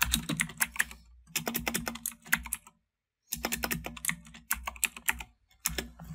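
Typing on a computer keyboard: rapid keystrokes in four short runs with brief pauses between them.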